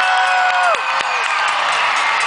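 A large crowd cheering and applauding in an ovation. One long, high, held call rises above it and breaks off under a second in.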